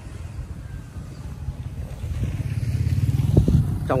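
Motor scooter engine coming closer and passing near by, the low rumble growing louder over the last two seconds.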